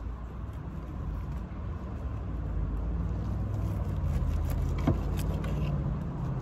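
Low engine rumble, growing gradually louder, with a sharp click about five seconds in.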